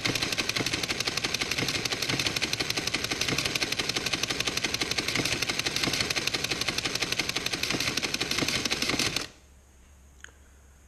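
Bohn Contex 55 electromechanical calculator running an automatic division: a rapid, even mechanical clatter of many strokes a second as it repeatedly cycles and shifts its registers. It stops suddenly about nine seconds in, once the quotient is complete.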